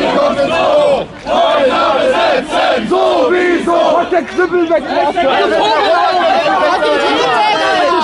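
A crowd of many voices shouting loudly and overlapping, with a short break about a second in.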